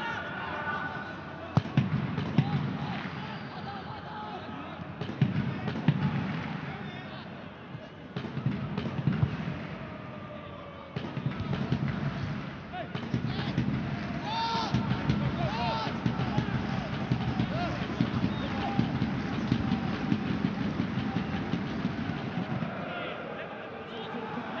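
Football match sound at pitch level during open play. The ball is struck several times with sharp thuds, clustered in the first ten seconds, and players' voices call out. A steady murmur of stadium crowd noise runs underneath.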